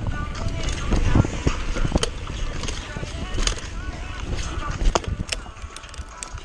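Mountain bike riding fast down a dirt trail: a steady rumble of tyres and wind on the camera microphone, with frequent sharp clicks and rattles from the chain and frame over bumps.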